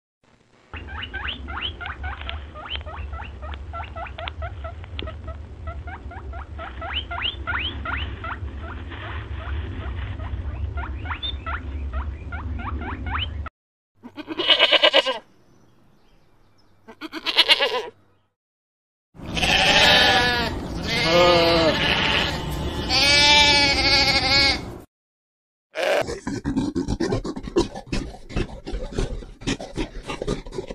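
A string of short animal clips. First comes a long run of quick, high, short calls over a low hum. After breaks, there are loud wavering bleats typical of goats.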